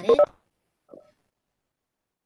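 A woman's voice ends a sentence in the first moment, followed by a faint brief blip and then the dead silence of a video call's noise-gated audio.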